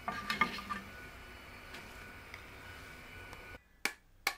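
Spatula knocking and scraping against a small nonstick frying pan as toasting bread is moved, several sharp knocks in the first second over a steady hiss. The hiss stops abruptly near the end and a single sharp tap follows.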